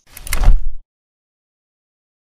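Intro logo sound effect: a short swell that builds into a deep boom and cuts off abruptly within the first second.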